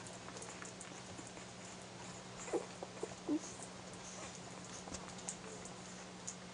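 Newborn Airedale terrier puppies squeaking while nursing: three short squeaks about halfway through, the first one falling in pitch.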